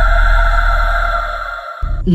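Sustained eerie electronic drone from a horror score: a steady high tone over a deep bass hum. It fades in the second half and cuts out just before the end.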